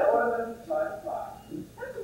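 Actors' voices speaking on a stage, in short phrases.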